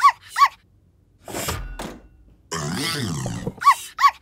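Cartoon sound effects of a robot rummaging through kitchen cupboards and drawers: two short falling squeaks at the start and two more near the end, knocks of doors and drawers about a second and a half in, and a longer rattling, wavering noise about three seconds in.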